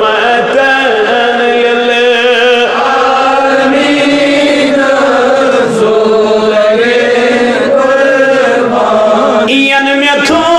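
A man's voice chanting solo in long, drawn-out melodic lines, the pitch wavering on the held notes, amplified through a microphone.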